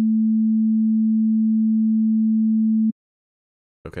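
Serum software synthesizer playing a pure, unmodulated sine wave: one steady tone with no overtones, held for about three seconds and then cut off sharply.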